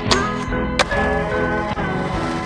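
Background music playing, with two sharp skateboard clacks of a board hitting the ground, one right at the start and a louder one just under a second in.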